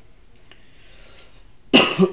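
A man coughs once near the end, a short, sharp burst after a quiet pause with only faint room noise.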